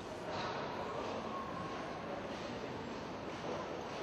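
Steady background hum and hiss of a playing hall, with no ball strikes.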